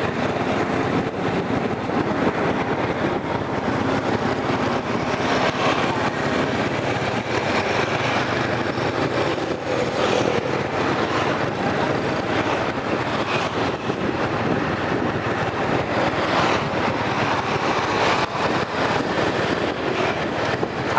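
Steady rush of wind and road noise from riding a motorbike along a street, with its engine running underneath.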